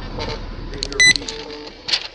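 A short, high-pitched electronic beep about a second in, over a low background murmur and hum inside a patrol car, with a brief click near the end.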